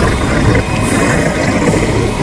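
Loud, steady low rumbling drone from a horror film's soundtrack score.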